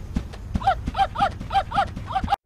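A cartoon voice gives a rapid run of short calls, each rising and falling in pitch, about three to four a second, starting about half a second in, over light knocking.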